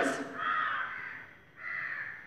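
A crow cawing, with two calls: one about half a second in and one near the end.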